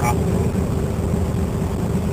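Steady low drone inside the cab of a 1955 Fargo pickup cruising on a snowy road: its 251 flathead six engine running at an even speed, mixed with tyre and road noise.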